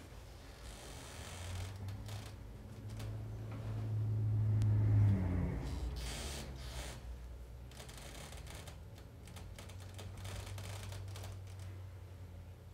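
Low steady hum of bass transducers pressed against the legs, playing a 40 Hz vibroacoustic tone. The hum swells to its loudest about five seconds in, then drops and carries on more quietly. Small clicks and a brief rustle of clothing come as the legs shift.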